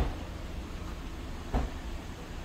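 Steady low rumble with two dull thumps, one at the start and one about a second and a half in: handling noise from a handheld camera being moved around a car's door and window.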